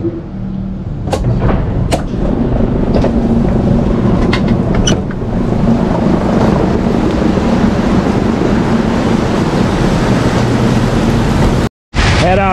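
The barn's feeding-system machinery running steadily after being switched on at its push-button panel: a low mechanical hum that builds over the first couple of seconds, with a few sharp clanks.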